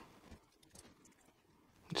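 Very quiet hand work with two faint small clicks from a small screwdriver and a tiny plastite screw being handled as the screw is started into a plastic limit switch.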